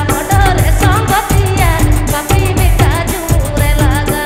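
A live band playing a Santali folk-pop song: a singer's wavering, ornamented melody over keyboard and a steady drum beat, amplified through stage loudspeakers.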